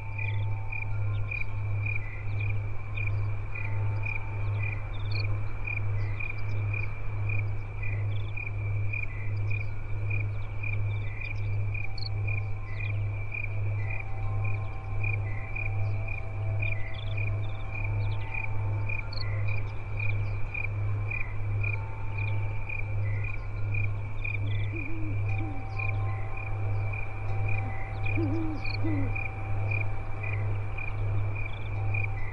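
Crickets chirping in an even rhythm, about two chirps a second, over a low drone that pulses steadily about twice a second. Soft, faint tones and calls come and go in the background.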